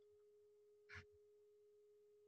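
Near silence: a faint steady hum-like tone, with one brief soft breath-like sound about halfway through.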